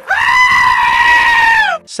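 Power tool motor running with a loud, steady high-pitched whine, then falling in pitch as it winds down near the end.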